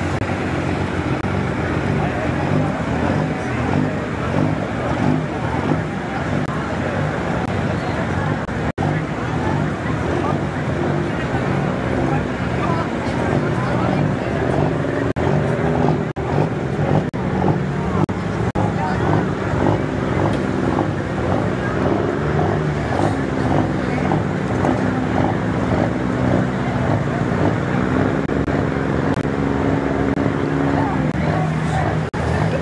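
Pickup truck engine running near the pulling sled, idling with the revs rising and falling repeatedly from about two-thirds of the way in.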